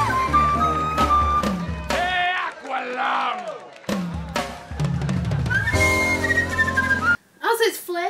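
Jazz flute solo with a band's drum kit and bass behind it, and voices between phrases. The music cuts off about seven seconds in.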